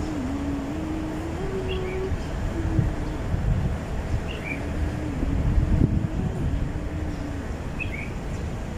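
Wind buffeting the phone's microphone, with gusts about three seconds in and again near six seconds. Under it a low voice hums a slow tune in two stretches, and a short high two-note chirp repeats about every three seconds.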